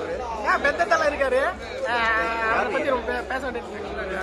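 Several men talking and chattering together.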